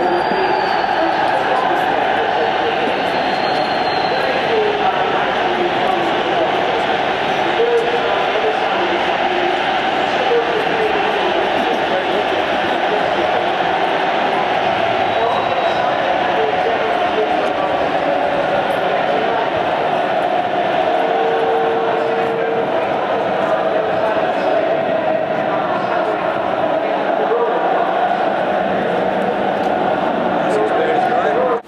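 Continuous, loud babble of several men's voices talking over one another, with a short steady tone a little past the middle.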